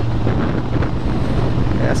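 Ducati Monster 696's air-cooled L-twin engine running steadily at cruising speed, a low steady hum under heavy wind rush on the camera microphone.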